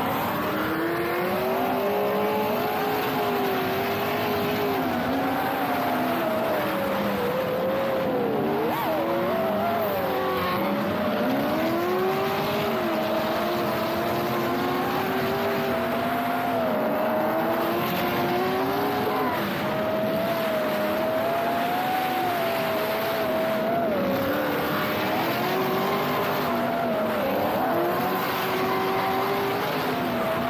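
A drift car's engine revving up and down over and over as the car slides around the track, with tyre squeal.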